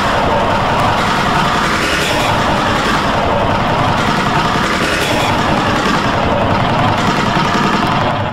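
A loud, dense wash of distorted, overlapping sound from several stacked logo and error-screen clips, holding steady with no clear tune or voice.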